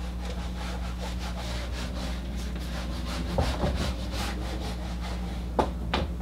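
Eraser wiping a whiteboard in quick back-and-forth strokes, a rhythmic rubbing over a steady low hum.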